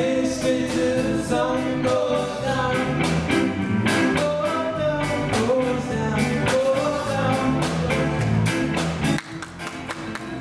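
Live band playing a song: singing over electric guitars, piano and a drum kit with a steady beat. Just after nine seconds the singing stops and the band drops to a quieter passage.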